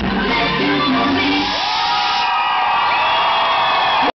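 Loud dance music with a bass beat stops about one and a half seconds in, giving way to an audience cheering, with rising shouts over the crowd noise.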